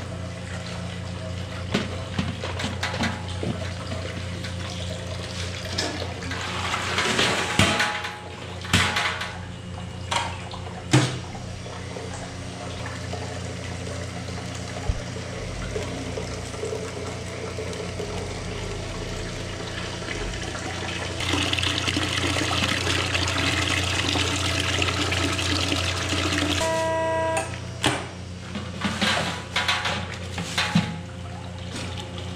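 Juice press running with a steady low hum, while a cloth bag of cooked red beet pulp is handled in its stainless strainer basket with rustles and a few knocks. About two-thirds of the way in, a louder rushing, watery hiss sets in as the press squeezes the juice out.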